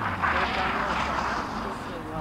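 Rally car passing on a gravel stage: a low engine drone under a rush of gravel and dirt thrown up by the tyres as the car slides through a bend. The rush swells in the first second and then eases.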